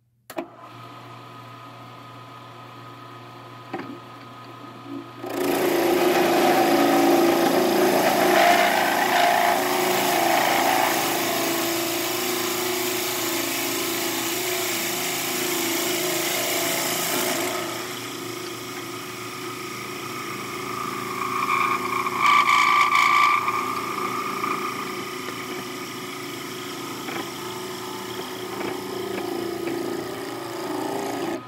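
Benchtop wood lathe motor starting up and running with a steady hum, then a twist drill bit in the tailstock chuck boring into a spinning wooden dowel: loud cutting noise from about five seconds in until about seventeen seconds. The lathe keeps running more quietly after that, with a brief high squeal a little past twenty seconds.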